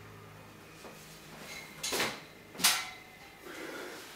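A man dropping down off a thick-bar pull-up station after a set: two short, sharp sounds about two seconds in, the second louder.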